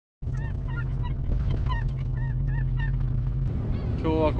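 Gulls calling over and over in short, hooked cries, over a steady low rumble.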